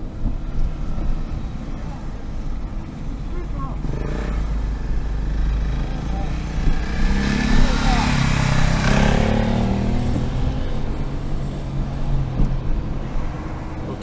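Car engine and tyre noise heard from inside the cabin while driving slowly, with another vehicle passing that swells up about seven seconds in and fades by ten seconds.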